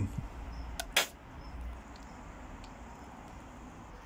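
Handling noise while ketchup is put on a burger bun: a small click, then a sharp click about a second in, over a faint low rumble that dies away, then only faint background hiss.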